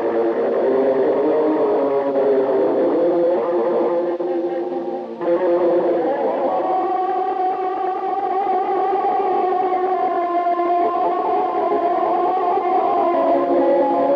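Electric guitar playing an Azerbaijani wedding-music melody. It breaks off briefly about five seconds in, then holds a long, slightly wavering note for several seconds before moving to a new pitch near the end.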